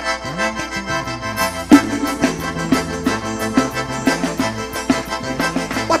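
Live forró band playing an instrumental passage led by accordion, over a sliding bass line and a steady beat, with a sharp hit about two seconds in. A singer comes back in right at the end.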